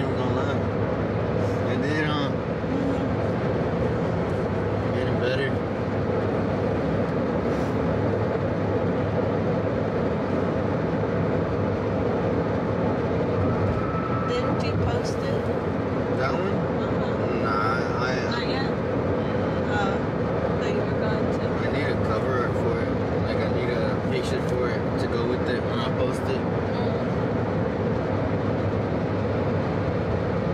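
Steady road and engine noise inside the cabin of a moving car, with a voice heard briefly now and then.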